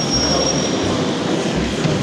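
Steady background din of a railway station hall, with a thin high-pitched whine that stops about a second in.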